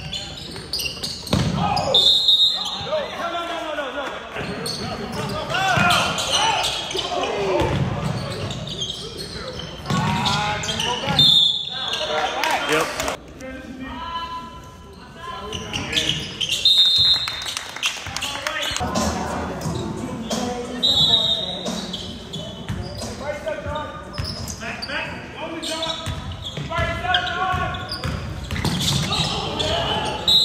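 Basketball game in a large gym: a ball bouncing on the hardwood court, several short high sneaker squeaks, and players and spectators shouting, with the sound echoing in the hall.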